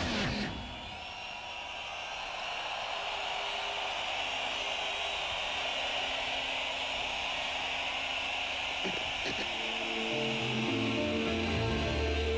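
Electronic dance music: a techno beat cuts off about half a second in, leaving a steady hissing noise wash with faint tones. Near the end, low sustained synth chords fade in as the next DJ set begins.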